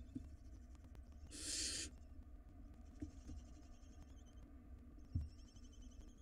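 Barn owl nestling giving a single hissing call, about half a second long, about a second and a half in. Soft knocks from the chicks shifting in the nest box, with a louder thump near the end.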